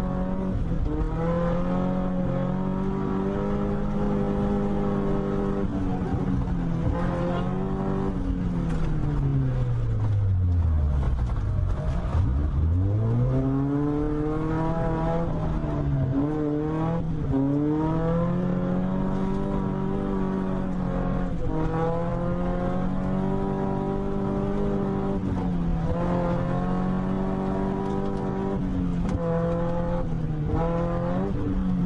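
Car engine revving hard, heard from inside the cabin while the car drifts. The revs rise and fall again and again with the throttle, with one deep drop and climb back about ten seconds in.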